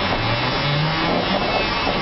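Škoda 9TrHT trolleybus driving, heard from inside the driver's cab: steady running noise with a faint high motor whine.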